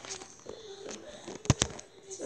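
Handling noise from a phone or camera being moved about and rubbed, with two sharp knocks in quick succession about one and a half seconds in.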